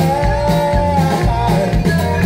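Live country band music through a loud PA: acoustic guitars, banjo and drum kit, with a steady beat and a sustained note held through the first half.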